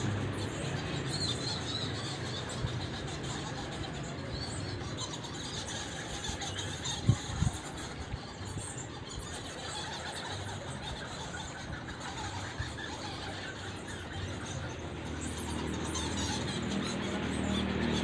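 A colony of bats squeaking and chittering inside a rock cave, a steady mass of high chirps. A couple of short knocks sound about seven seconds in.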